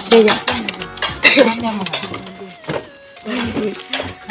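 Voices talking in short bursts, with a few light clicks and clinks between them; it grows quieter after the first two seconds.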